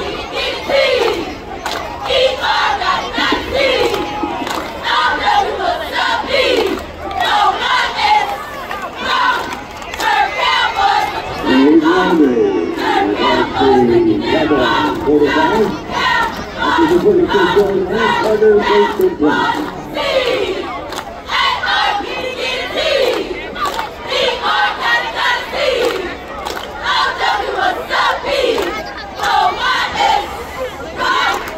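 Squad of cheerleaders shouting a rhythmic cheer in unison, punctuated by sharp hand claps, with crowd voices mixed in.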